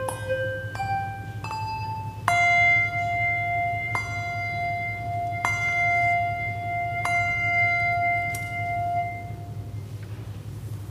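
Handbells rung by a single ringer: a few different notes in the first two seconds, then one note struck four times about a second and a half apart, each left to ring. The ringing dies away near the end, over a steady low hum.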